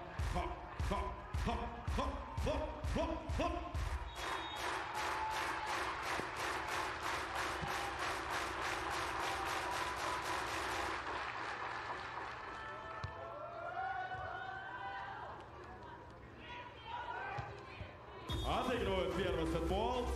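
Arena crowd clapping in a steady rhythm, about three claps a second, which stops about eleven seconds in. A quieter stretch with a few calls follows, and voices come in near the end.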